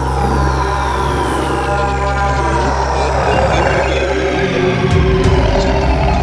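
Psytrance intro: a sustained low synth drone under long falling synth sweeps and a building wash of noise. The bass drops out briefly near the end, then comes back in.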